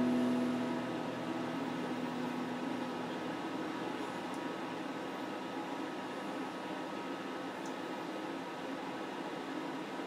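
An electric guitar chord rings on and fades away over the first two or three seconds, leaving a steady hiss.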